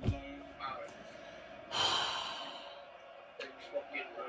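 A man's long, exasperated exhaled sigh about two seconds in, after a sharp knock right at the start.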